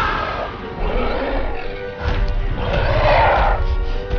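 A film creature's roar, the Minotaur's, mixed over a dramatic orchestral score, with deep rumbling from about two seconds in.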